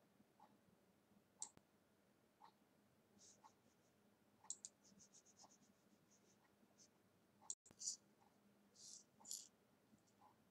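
Near silence with faint, scattered light clicks and a few brief soft rustles: small handling noises.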